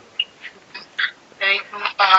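A string of short, high-pitched calls with a clear pitch, a few each second, getting louder toward the end.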